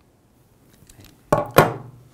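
Metal parts of a control valve's stem connector and connector arm being handled: a few faint ticks, then two sharp metallic clicks about a third of a second apart, each ringing briefly.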